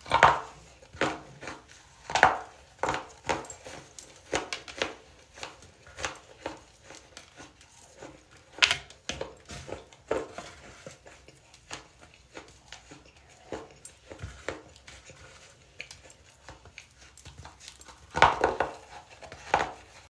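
Hardened baking soda chunks crunching as they are bitten and chewed: a string of sharp, irregular crunches, loudest right at the start and in a burst near the end.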